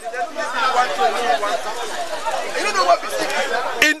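Several people talking over one another close by, a steady babble of overlapping voices; one man's voice starts again near the end.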